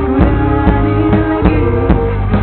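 Live band music: a steady drum beat, about two beats a second, under held instrumental chords.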